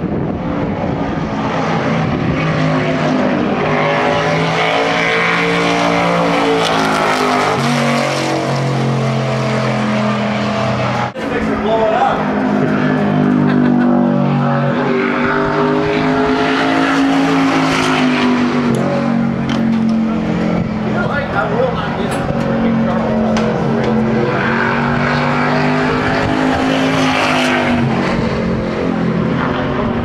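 Stock car V8 engines running, their pitch rising and falling over several seconds at a time as the cars accelerate and slow. The sound breaks off briefly about 11 seconds in.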